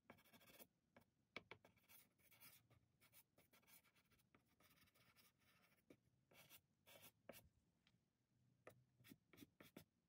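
Faint scratching of a soft pastel stick drawn across non-sanded toned paper, in short, irregular strokes with brief pauses.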